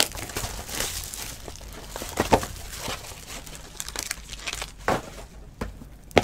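Plastic shrink wrap crinkling and crackling as it is torn off a sealed trading-card box, with a few sharper snaps.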